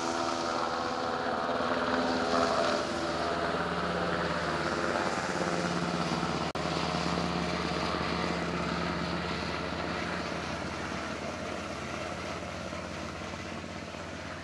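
A Seahawk helicopter flying past: steady rotor and turbine noise with a pitched drone whose pitch slides down a little in the first few seconds as it moves away, then fades slightly toward the end.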